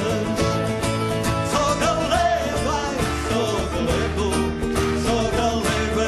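Live folk band playing an instrumental passage: a gaita de foles (bagpipe) with its steady drone under the melody, over a Portuguese guitar and other plucked strings.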